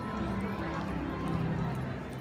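Hoofbeats of several ridden horses moving along the rail on the arena's dirt footing, mixed with people's voices.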